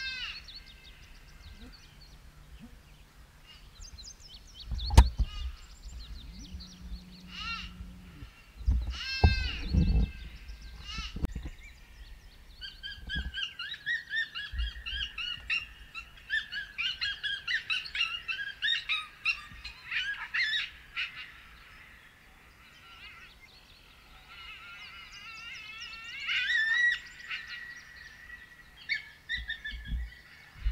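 Songbirds chirping and calling, with a dense run of quick chirps through the middle and a few arching calls in the first ten seconds. Several dull thumps close to the microphone around five and ten seconds in, the first of them the loudest sound.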